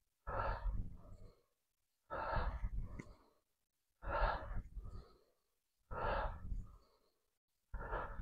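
A man breathing out hard in a steady rhythm, once each time he pushes a dumbbell out in front of him. There are five exhalations, about one every two seconds, each loud at first and then tailing off.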